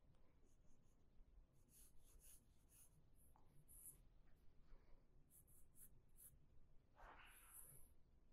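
Faint pencil strokes on paper: a scattering of short, light scratches, with a longer stroke near the end.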